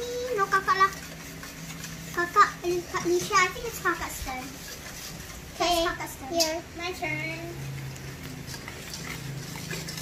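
Young children's high voices talking and exclaiming, with no clear words, over a faint steady low hum.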